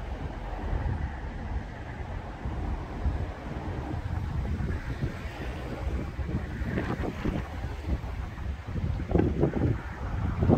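Wind buffeting the microphone outdoors: an uneven low rumble that rises and falls in gusts, with a few stronger gusts near the end.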